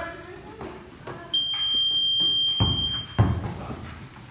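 A single long, steady, high-pitched tone, like a buzzer or whistle, sounding for nearly two seconds from a little over a second in. Two dull thuds, such as a basketball hitting the turf floor, follow near the end.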